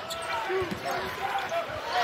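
A basketball being dribbled on a hardwood court, with scattered voices from the arena around it.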